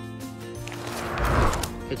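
Background music with steady held notes, overlaid by a swelling rush of noise that builds about half a second in, is loudest just past the middle and fades out, like a whoosh.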